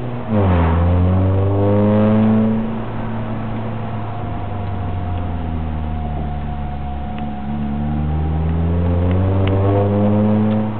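Chevrolet car engine heard from inside the cabin while driving. Its pitch drops at a gear change just after the start and climbs under acceleration, then eases off around three seconds in and climbs again near the end. A thin steady whine sits above the engine for a few seconds in the middle.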